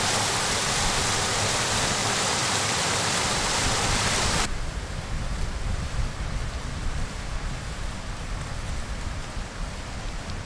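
Water rushing down a stepped concrete spillway, a loud steady hiss. It cuts off suddenly about four and a half seconds in, leaving a lower, gusting rumble of wind on the microphone.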